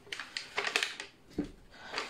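Butter's paper wrapper crinkling and rustling as the block is worked out of it, with a soft thud about one and a half seconds in as the butter drops into the bowl.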